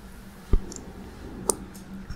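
Close-miked eating sounds between bites of a chicken nugget: a low thump about half a second in, then a few faint clicks and one sharp click about a second later.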